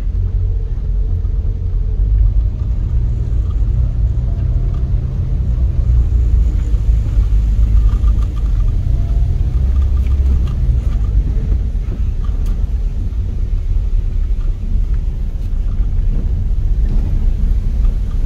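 Low, steady rumble of a car driving slowly, heard from inside the cabin: engine and tyre noise on a rough street.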